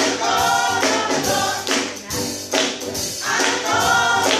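A small group of gospel singers singing together to electric keyboard accompaniment, with hand claps on the beat.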